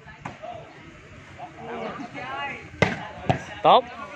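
Volleyball struck by hand: a faint hit just after the start, then two sharp slaps about half a second apart near the end.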